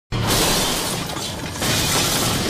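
Animated-intro sound effect of shattering debris: a dense, noisy rush that starts suddenly and surges again about one and a half seconds in.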